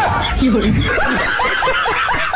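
A laughing sound effect: a voice laughing loudly in quick repeated bursts, about six a second.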